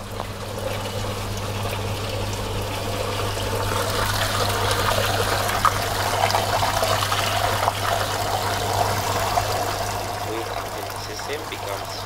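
Water running out of a bleed hose and splashing into a hydraulic bench's sump tank, over a steady low hum from the bench's running pump, while air bubbles are flushed out of the pipe-fittings rig. The splashing grows louder over the first few seconds and eases a little near the end.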